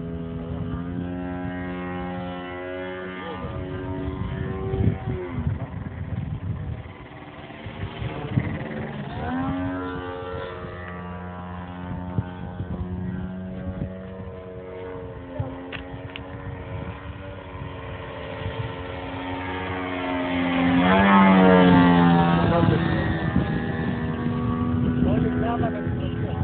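Engine and propeller of a 2.5 m radio-controlled Extra 330S aerobatic plane flying overhead, the pitch rising and falling with the throttle through its manoeuvres. It is loudest a little past twenty seconds in, as the plane passes closest.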